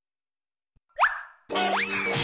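Silence, then a short cartoon 'boing' sound effect about a second in, a tone sliding quickly upward and dying away. Background music for children starts just after it, opening with a rising whistle-like glide.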